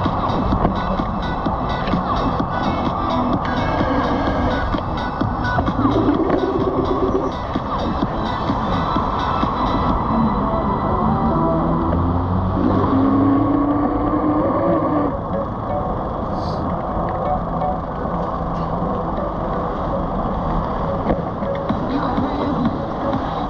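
Music playing over steady wind and road noise from the moving ride.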